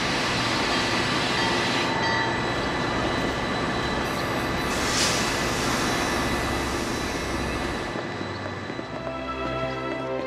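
Passenger train carriages rolling slowly into a station, a steady noisy rumble with hissing steam and a loud burst of hiss about five seconds in; the train noise fades near the end as music takes over.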